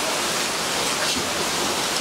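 Wind blowing steadily, an even hiss of moving air.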